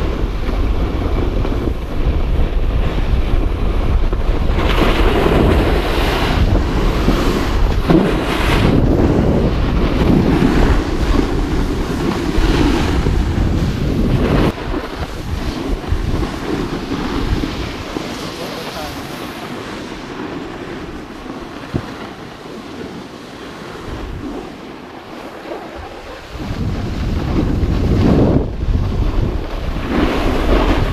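Wind buffeting the microphone of a camera moving fast down a ski slope, a steady rushing rumble. It drops abruptly about halfway through, stays quieter for roughly ten seconds, and rises again near the end.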